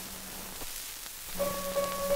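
Grand piano accompaniment on an old 78 rpm record, heard through the disc's surface hiss and crackle. A held chord fades away, and after a short gap new notes are struck about one and a half seconds in.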